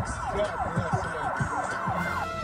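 An emergency-vehicle siren in a fast yelp, rising and falling about four times a second.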